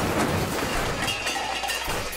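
Tail of a car-crash sound effect: a noisy clatter with clinking debris, fading gradually after a tyre skid.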